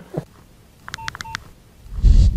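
A quick series of four or five short electronic beeps, like telephone keypad tones, in about half a second, following a brief voice sound at the start.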